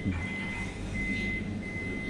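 Steady low rumble and hum of a moving or idling train carriage, with a thin high-pitched whine that cuts in and out.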